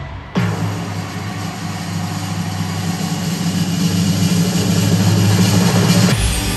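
Live concert music over an arena sound system: after a brief dip, a low electronic drone starts suddenly about a third of a second in and swells steadily louder, then cuts off at the end.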